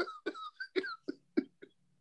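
Men laughing in short, broken bursts, softer than the talk around them.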